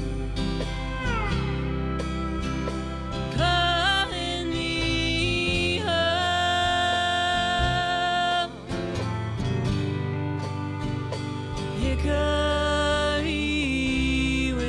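Instrumental country-style band passage: a steel guitar slides between held notes over strummed acoustic guitar, electric bass and drums.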